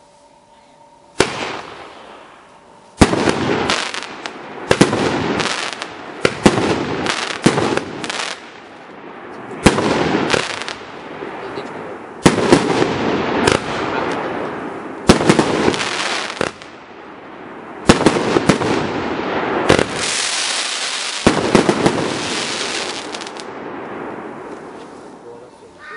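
A 21-shot fireworks cake firing: a single sharp report about a second in, then from about three seconds in a rapid, irregular series of loud shots, each trailing off into a hiss. Near the end a long hissing spell fades out as the last stars burn out.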